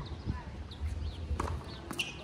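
A few sharp knocks from play on an outdoor hard tennis court, two of them about half a second apart near the end, over a low wind rumble on the microphone.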